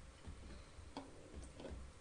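Faint taps of a stylus on a tablet screen: a few light, irregular ticks over a low background hum.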